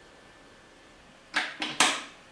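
Faint room tone, then about a second and a third in, three sharp percussive hits in quick succession, each dying away quickly.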